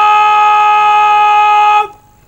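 Military bugle sounding one long, steady note that cuts off near the end, part of a bugle call played as a salute at a soldier's funeral.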